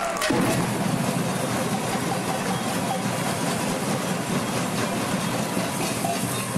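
Many drums in a children's percussion band playing a sustained, continuous roll: a dense steady rumble that starts about a third of a second in.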